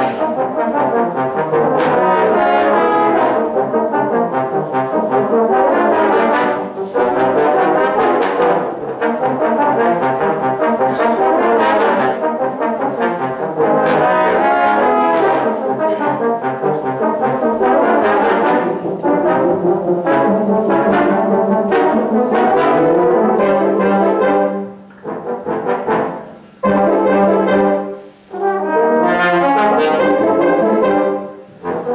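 A fanfare band of brass and saxophones plays a big-band jazz piece live in a hall, loud and continuous. Near the end it breaks into short punchy phrases with brief gaps between them.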